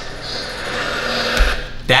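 A whoosh sound effect marking a video transition, swelling over about a second and a half and ending in a low thump, over an ambient background bed.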